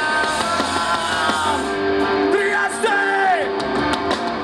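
Live pop-punk rock band playing loud through the stage sound system: electric guitars and drums under a singer's long held notes, with one note sliding down late on.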